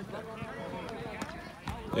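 Background voices of children and adults chattering and calling, with a few light knocks.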